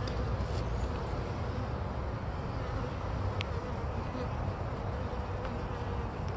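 A collected honeybee colony buzzing steadily, a dense cluster of bees massed around the opening of their new box.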